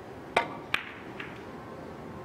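A three-cushion carom billiards shot: a sharp click as the cue tip strikes the cue ball low, followed about a third of a second later by a second sharp click, and a faint knock a little past the middle.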